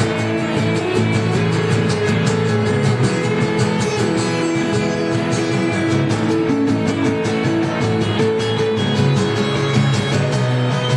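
Live amplified rock band playing, with electric and acoustic guitars.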